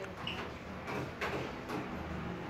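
Steady low hum of indoor ambience, with a few soft knocks about a second in and near the end.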